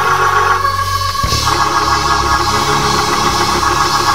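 Organ playing held chords, moving to a new chord about a second in as a low bass note comes in.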